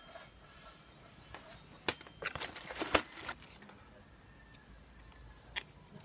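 Handling clatter of small hard objects: one click about two seconds in, then about a second of clicks and rustling, the sharpest near the middle. A few short bird chirps sound faintly in the background.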